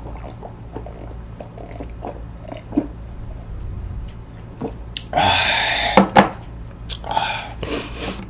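A person gulping a drink from a glass beer mug in a run of small swallows, then a loud breathy exhale about five seconds in and two sharp knocks of the glass mug set down on the table shortly after.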